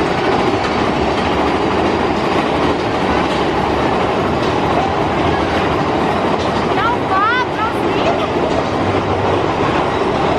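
Big Thunder Mountain Railroad mine-train coaster cars running steadily along the track through a cave, a continuous loud clatter of wheels and track. A brief wavering high squeal comes about seven seconds in.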